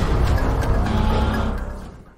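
Intro sting of music and sound effects with a heavy rumble and a hit right at the start, fading out near the end.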